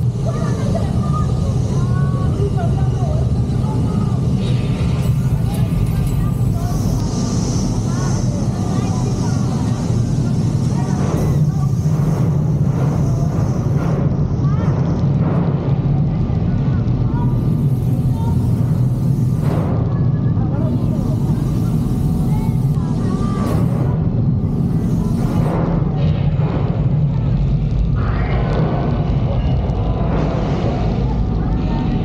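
A steady low rumble inside a crowded ride truck, with riders' voices murmuring over it.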